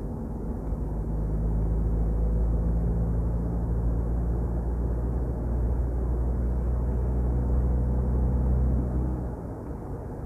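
Steady low hum of a car's engine and road noise while it travels at speed on a highway, heard from inside the cabin; the hum eases off about nine seconds in.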